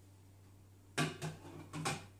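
A few quick clinks and knocks of a glass bowl against the rim of a stainless-steel food-processor bowl as flour is tipped in, starting about a second in.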